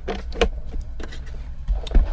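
A few short clicks and knocks as a power plug is handled and pushed into the back AC outlet of a portable power station, over a steady low hum.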